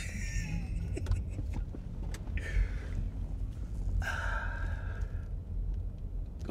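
Low, steady rumble of a running car engine heard from inside the cabin, with short breathy sounds over it: a man laughing right at the start, then another breathy burst about two and a half seconds in and a longer one about four seconds in.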